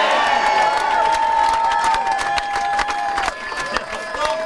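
Crowd of supporters cheering and applauding: dense clapping with shouts and whoops over it, easing slightly about three seconds in.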